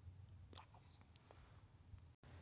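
Near silence: a low steady hum with a few faint soft ticks about a quarter to two-thirds of the way in.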